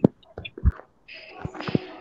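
Faint, breathy whispered speech over a video call, after a few sharp clicks and a short low thump.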